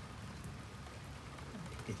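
Light rain falling steadily, a soft even hiss without distinct drops.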